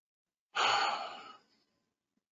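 A man's sigh: one audible exhale about half a second in, fading away over about a second.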